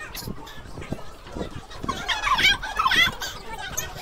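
Background chatter in a busy hallway. About two seconds in comes a short run of high-pitched, wavering squeals from a young person's voice, the loudest part.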